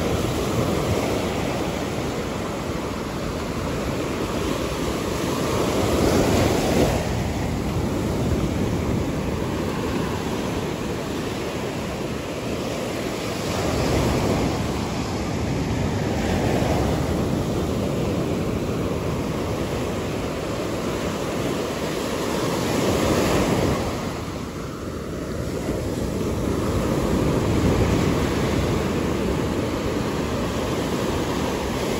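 Ocean surf breaking and washing up a sandy beach: a steady rush that swells every several seconds as each wave comes in.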